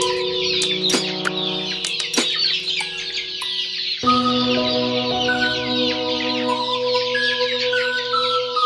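A large flock of young chickens calling all at once, a dense chatter of high cheeps and clucks, over background music with sustained chords that change about halfway through.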